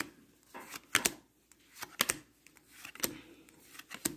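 Topps baseball cards being flipped through one at a time off a hand-held stack, a light sharp card snap about once a second.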